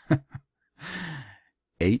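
A man's laugh tailing off in two short breaths, followed by a breathy sigh lasting under a second.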